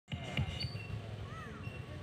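Faint outdoor background with distant voices and a few soft low thumps.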